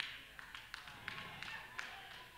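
Faint, irregularly spaced sharp taps, about five in two seconds, over low room noise.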